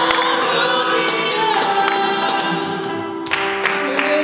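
Live gospel worship song: several voices singing together, led by a woman's voice, over an acoustic guitar, with a steady percussive beat of claps or tambourine strokes.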